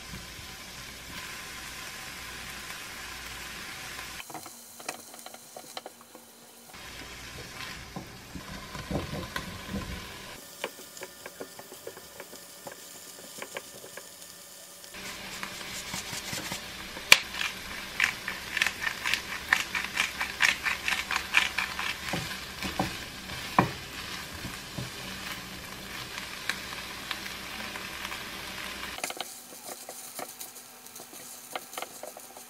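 Onion, leek and sliced chicken-breast sausage sizzling in a frying pan as they are stir-fried with a spatula, with the spatula scraping over the pan. A busier run of sharp clicks and taps comes past the middle, then the sizzle goes on steadily.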